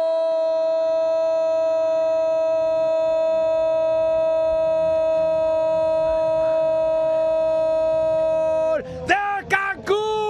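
A football commentator's goal cry: one long 'gol' held on a single high note for almost nine seconds, breaking into short shouts near the end.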